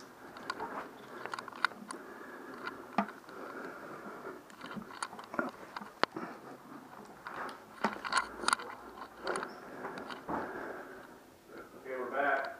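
Rustling and scraping handling noise with scattered sharp clicks, from a body-worn camera and its wearer's clothing rubbing and knocking as he moves about and settles onto a bed.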